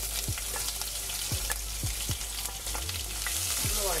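Chopped ginger, garlic, green chillies and sliced shallots sizzling in hot oil in a nonstick wok, a steady hiss, with a wooden spatula stirring and scraping the pan. The sizzle grows a little louder near the end as more of the onion hits the oil.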